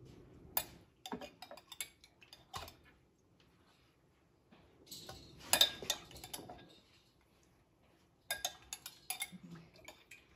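Scattered light clinks and taps of a utensil against ceramic dishes and a plate while taco toppings are served. They come in three bursts, the loudest about five and a half seconds in, with quiet gaps between.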